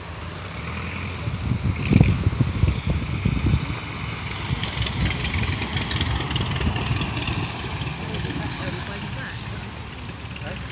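De Havilland Tiger Moth biplane's Gipsy Major four-cylinder engine running as the aircraft rolls across the grass after landing. There is a burst of low rumble on the microphone about two seconds in.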